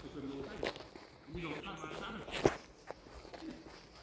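A few footsteps on a tarmac drive, with faint voices talking at a distance.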